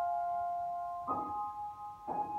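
Grand piano accompaniment: a held chord dies away, and a new chord is struck about a second in and left to ring.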